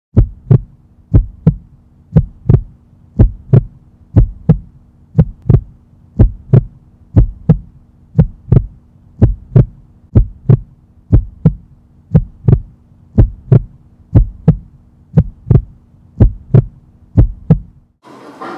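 A heartbeat sound: paired low thumps, lub-dub, about one pair a second, over a faint steady low hum. The thumps stop abruptly at the end.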